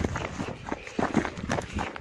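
Footsteps of people walking on a snow-covered rocky mountain path, a quick, irregular series of steps.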